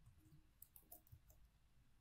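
Faint computer keyboard keystrokes, a few scattered clicks against near silence.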